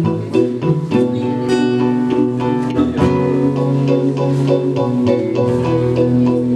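Live band music without vocals: notes played on a Korg synthesizer keyboard together with an acoustic guitar, with the chord changing about a second in and again about three seconds in.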